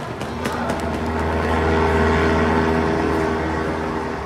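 Propeller-plane engine sound effect played over the show's loudspeakers: a steady drone that swells to its loudest about halfway and then eases off. It stands for the pilot's plane going down, smoking.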